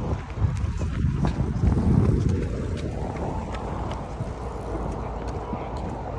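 Wind rumbling on the microphone on an open lakefront, with scattered light clicks and knocks through it.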